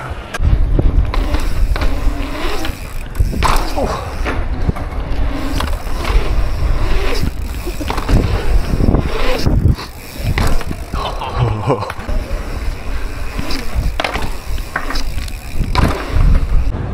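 Mountain bike's knobby tyres rolling over the concrete of a skatepark, through bowls and over humps, with heavy wind rumble on the helmet-mounted microphone and scattered knocks and clicks from the bike. The loudness swells and dips, briefly easing about ten seconds in.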